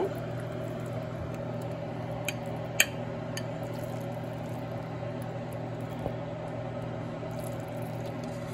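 Steady hum of a kitchen fan, with a spoon scooping thick rice and beans in a pot and a few light clicks against the pot, the sharpest about three seconds in.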